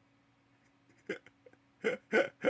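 A man laughing: after a quiet first second, short separate bursts of laughter break out, the last and loudest near the end.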